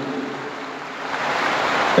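Audience applauding, growing louder towards the end.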